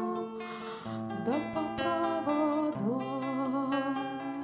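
Acoustic guitar accompaniment with a woman's wordless sung melody over it. The voice glides up into long held notes with vibrato about a second in and again near three seconds.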